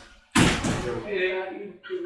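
A sudden thud, like a door slamming, about a third of a second in, fading out over about a second under a man's low, wordless voice.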